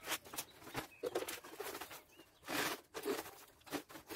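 Hands rummaging through and scooping a loose, dry-looking potting mix of soil, rice husk and coir in a woven bamboo basket: short, irregular scratchy rustles, one of them longer about two and a half seconds in.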